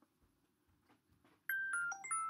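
Near silence, then about a second and a half in, an electronic chime of three quick bell-like notes stepping down in pitch, each ringing on.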